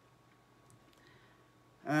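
A quiet pause of room tone with a faint steady high tone, then a man starts speaking near the end.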